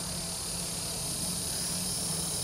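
Steady high-pitched chorus of insects outdoors, with a faint low hum underneath.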